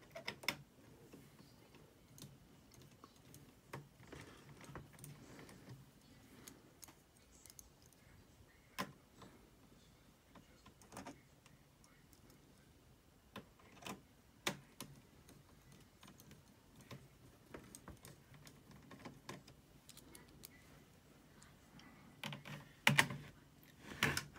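Scattered light clicks and taps of a small precision screwdriver and tiny screws being picked up and driven into a laptop motherboard and its plastic chassis, irregular and quiet, with a few sharper clicks.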